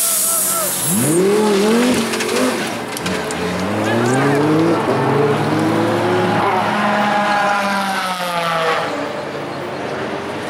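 Audi R8 LMS race car's V10 engine revving as the car pulls away, its pitch rising in several steps through the gears, then levelling off and fading near the end as it moves off.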